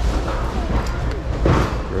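Hands rummaging through a bin of stuffed animals: rustling of plush toys and a plastic bag, with a single knock about one and a half seconds in.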